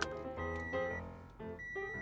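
Background music: a bright melody of short pitched notes over a steady pulse.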